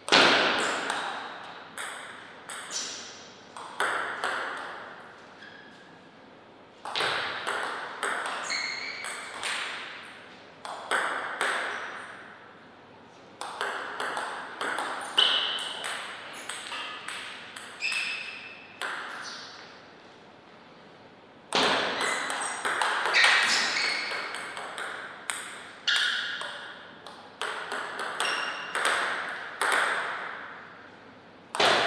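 Table tennis rallies: quick, sharp ticks of the ball striking paddles and the table, some leaving a short ringing ping. They come in four bursts of rapid hits, each point followed by a pause of a second or two.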